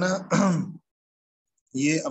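A man speaking Urdu, drawing out a word, then dead silence for about a second before his speech starts again. The abrupt cut to silence is typical of video-call audio gating.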